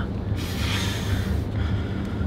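Low, steady road rumble heard inside a moving car's cabin, with a breathy hiss lasting about a second starting shortly in.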